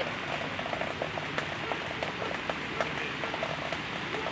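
Rain falling, heard as an even hiss with irregular drops ticking close by.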